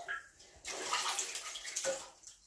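Dirty water sloshing and splashing in a blocked toilet bowl as a plunger wrapped in a plastic bag is pumped in it. A long stretch of splashing starts about half a second in.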